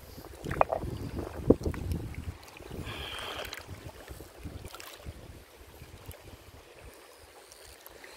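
Wind rumbling on the microphone, with a few sharp clicks of river stones being handled on the gravel in the first couple of seconds, the loudest about a second and a half in.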